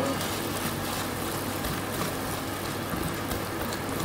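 Silicone-coated balloon whisk beating waffle batter in a stainless steel bowl: a steady wet swishing.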